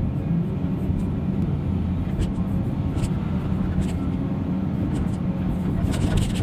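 Caterpillar 336 hydraulic excavator's diesel engine running steadily under load as the bucket digs, heard from inside the cab, with a few light knocks about two, three and four seconds in.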